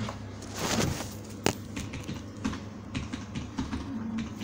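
Scattered light clicks and knocks, with one sharper click about one and a half seconds in, over a steady low hum.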